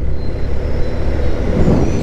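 A motorcycle at road speed, heard from the rider's seat: a steady low rumble of wind buffeting the microphone over the engine and road noise.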